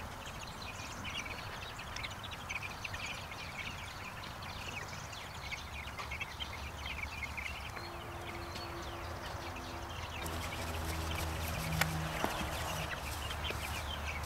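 Faint farmyard sounds: small birds chirping and chickens clucking. Near the end come rustling footsteps drawing closer.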